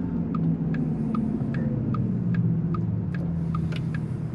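Inside the cabin of a Porsche Taycan electric car on the move: a steady low hum and road rumble, with a light tick recurring about twice a second.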